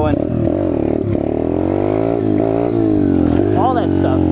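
Peace Moto 125cc Chinese pit bike's single-cylinder four-stroke engine under way, heard from the rider's seat. The revs climb for about two seconds, fall, then climb and fall again, with wind rumble on the microphone.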